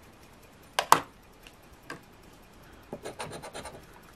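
Quick rasping strokes of a plastic scratcher scraping the coating off a scratch-off lottery ticket on a wooden table, starting about three seconds in. Before that, two sharp clicks just before the first second and a third about two seconds in.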